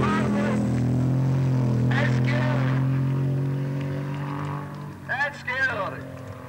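Bandag Bandit drag truck's engine running hard at a steady pitch as it passes at speed, then fading as it draws away after about three seconds. Voices rise over it, with a loud shout near the end.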